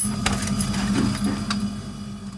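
Steel plates clinking and scraping against a refrigerator's wire shelf as a covered dish is set inside, with a sharp clack at the start and lighter clinks after it, over a steady low mechanical hum.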